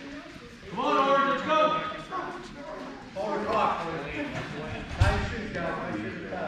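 Indistinct voices calling out in three short stretches, unclear enough that no words come through, with a single sharp thud about five seconds in.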